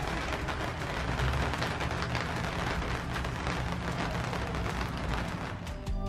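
Steady rain falling, heard from under a screened porch roof.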